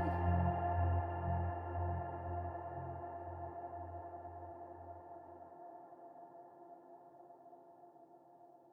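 Closing chord of a song ringing out and fading away: a low bass note pulsing slowly dies out about five and a half seconds in, while the higher held notes fade almost to silence by the end.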